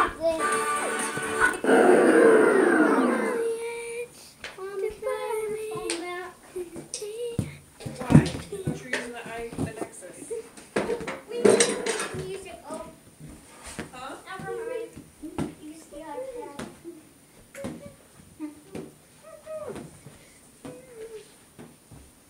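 Music plays for the first three or four seconds and then stops. After that a young child makes short, rising-and-falling voice sounds with no clear words, and there are a few knocks close to the microphone.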